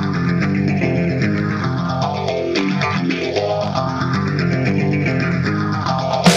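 Intro of a hard rock song: a guitar riff of plucked notes with bass, at a steady level.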